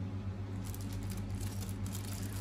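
Clear plastic zip-lock bag of small spare parts crinkling lightly as it is handled, starting a little over half a second in, over a steady low hum.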